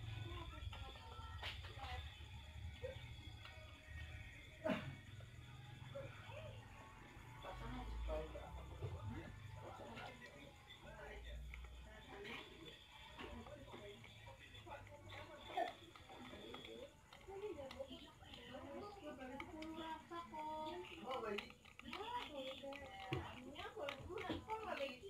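Faint background speech and music, like a television playing in the room, with voices busier in the second half. A few sharp clicks cut through, about a second and a half in, near five seconds and again past fifteen.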